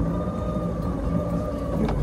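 Jet ski engine running at a steady speed, a constant hum with a low rumble underneath.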